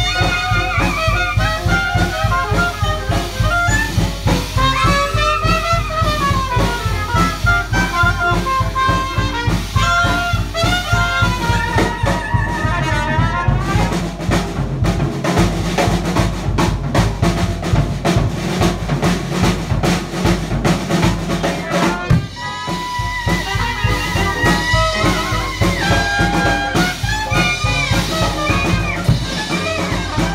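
Live New Orleans-style jazz from cornet, clarinet, piano and drum kit, with a steady drum beat underneath. About halfway through, the horns drop out for several seconds, leaving the drums and piano. Then cornet and clarinet come back in together.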